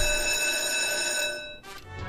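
Online slot game's electronic ringing jingle of steady bell-like tones. It fades about a second and a half in, with a short rattle near the end as the next free spin starts.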